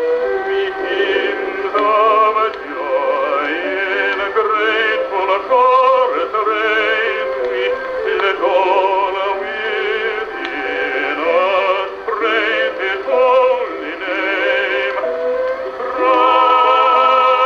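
A 1914 acoustic recording played on an Edison Diamond Disc phonograph: a baritone singing sustained notes with vibrato, with orchestra accompaniment. The sound is thin and narrow, with no deep bass, typical of a pre-electric acoustic recording.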